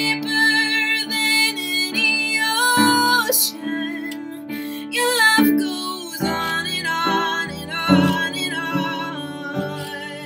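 A woman singing a slow worship song over piano. Long held sung notes with vibrato ring out over sustained chords.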